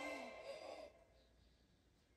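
Faint audio of the anime episode: sustained music with a brief voice, cutting off about a second in and leaving near silence.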